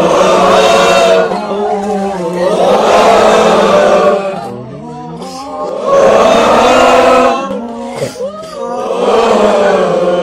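A group of voices chanting and singing a campfire song together, in loud phrases with short dips between them.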